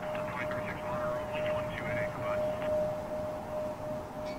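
Embraer regional jet taxiing, its engines giving a steady whine over a low rumble.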